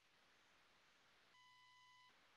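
Near silence, with a very faint steady tone coming in about halfway through.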